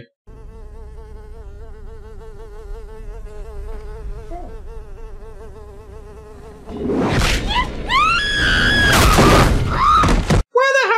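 Horror-film soundtrack: a steady, slightly wavering buzz for about seven seconds, then a sudden loud burst of noise and a woman screaming, with rising cries, as she is grabbed and hauled up.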